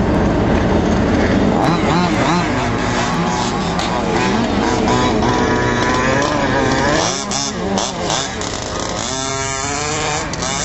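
Two-stroke petrol engine of a 1/5-scale HPI Baja RC truck running on the throttle, its pitch rising and falling repeatedly as it revs up and eases off, with a quick run of revs just after nine seconds.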